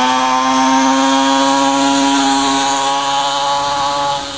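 Twin-engined mini moto's small two-stroke engines running hard under way: a loud, steady, high-pitched buzz with many overtones, its pitch creeping up a little as it holds the revs.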